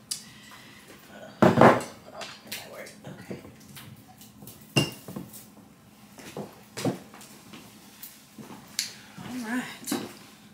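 Knocks and clinks of a glass bottle and other items being set down and handled on a table, a few separate strikes with the loudest about a second and a half in; one clink near the middle rings briefly like glass.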